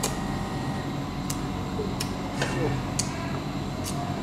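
Someone eating cooked crab by hand: about six sharp, irregularly spaced clicks and cracks of shell and mouth over a steady low hum.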